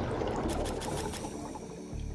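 Bubbling underwater sound effect that fades out gradually.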